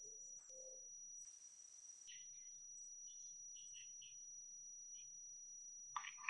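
Near silence: quiet room tone with a faint steady high whine and a few faint, short chirps.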